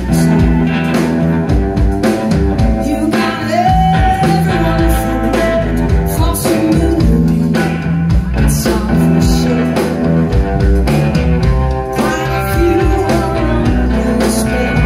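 Live blues band playing, with electric guitar, bass and drums under a lead melody whose notes bend and slide in pitch.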